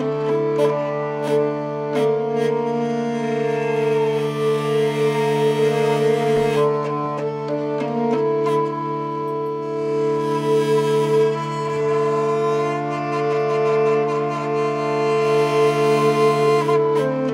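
Hurdy-gurdy playing a melody over its steady drone strings, in a live acoustic folk performance.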